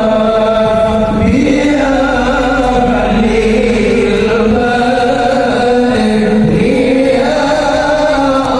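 Shalawat, Islamic devotional chanting in praise of the Prophet, sung by voices in long, slowly wavering held notes and carried over loudspeakers to a large outdoor crowd.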